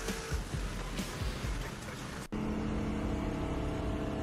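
Cars racing at speed on a highway: engine and road/wind noise with no clear pitch. A hard edit cuts it off a little over two seconds in, after which a steady droning tone holds.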